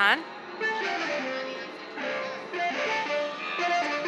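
Interactive laser music installation sounding a run of plucked, guitar-like electronic notes, stepping from pitch to pitch as a hand breaks its beams.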